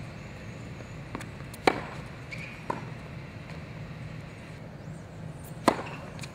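Tennis ball being hit and bouncing on a hard court during a rally: a loud, sharp racket strike about two seconds in, a softer knock about a second later, and another loud racket strike near the end.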